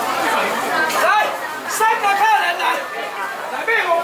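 Several people talking over one another in a large, echoing indoor hall.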